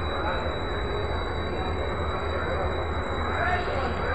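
Diesel-electric locomotive running with a steady low rumble as it moves slowly through a station, with indistinct voices in the background.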